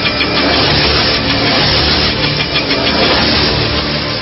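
Loud music with a heavy bass line and a steady beat, playing as the bridge into the programme's recorded editorial.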